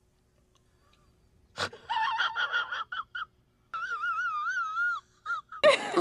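After a short silence, a man's high-pitched strained voice: a few short gasping, whimpering sounds, then a quavering wail lasting about a second.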